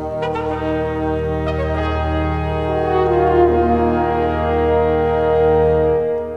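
Orchestral music: brass playing a loud, full chord that is held through, with one inner part sliding downward about halfway through.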